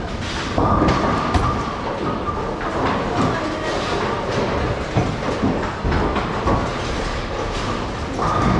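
Bowling alley: a continuous rumble of bowling balls rolling along the lanes and through the ball return, with scattered sharp knocks and a steady hum that sets in about half a second in.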